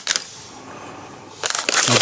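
Clear plastic bag of loose building-brick parts crinkling as it is handled, starting about one and a half seconds in after a quiet stretch.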